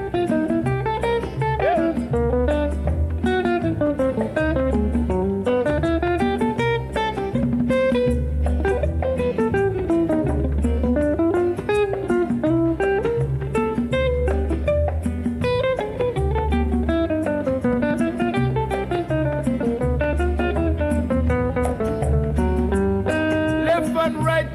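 Instrumental break in a Jamaican calypso song: a plucked guitar plays rising and falling melodic runs over a steady, pulsing bass line.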